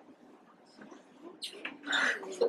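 Classroom of children waiting quietly: faint whispering, rustling and shuffling, with louder children's voices starting to rise near the end.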